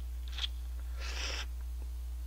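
Instant jjajang noodles being slurped from a cup: a short suck about half a second in, then a longer slurp of about half a second just after the one-second mark. A steady low hum runs underneath.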